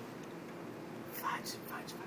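A short, breathy human sound a little past halfway, like a whisper or a puff of breath, over a low steady background hum.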